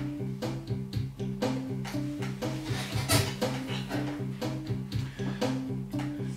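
Music: a looped backing track with a steady, quick, even pulse and a repeating low bass line.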